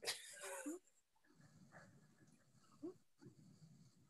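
Breathy laughter: a loud burst of laughing breath right at the start, then quiet, with one short faint laugh about three seconds in.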